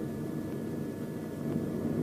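Steady low drone of aircraft engines in flight, heard under the hiss of an old film soundtrack.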